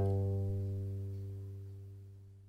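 Two cellos' final notes ringing on after the bows have left the strings, fading away steadily with no new notes.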